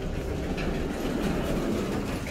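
Otis passenger lift doors sliding open with a steady low rumble that swells in the middle.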